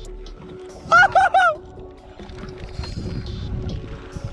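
Geese honking: three short, loud honks in quick succession about a second in, over a faint steady hum.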